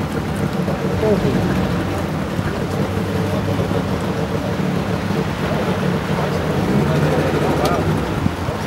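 An engine running steadily at idle, with the voices of a crowd chattering over it.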